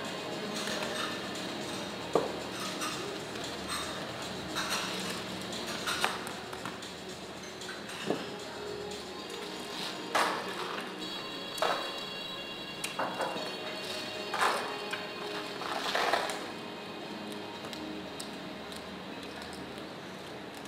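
Clay casino chips clacking against one another as a roulette dealer sweeps and gathers them off the layout: about a dozen sharp, irregular clacks, the loudest about two seconds in. Steady background music runs underneath.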